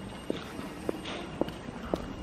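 Footsteps on wet stone paving, a steady walking pace of about two sharp steps a second.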